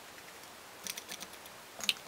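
Light clicks and taps from makeup tools and containers being handled: a quick cluster of small clicks about a second in, then one sharper, louder click near the end.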